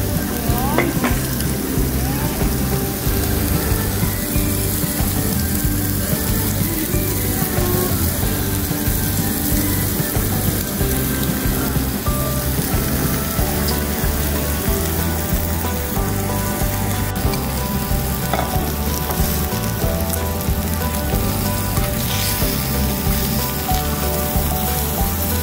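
Pork belly and vegetables sizzling steadily on a cauldron-lid grill, with background music underneath.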